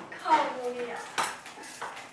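Plastic magnetic building tiles clicking and clattering against each other and the tabletop as they are handled, with a few sharp clicks in the second half. A short voiced sound from a person, likely a laugh, comes in the first second.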